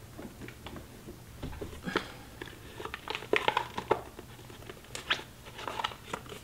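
Oracle cards being handled and shuffled: a scatter of soft flicks and slaps of card stock, in short bunches about two, three to four, and five seconds in.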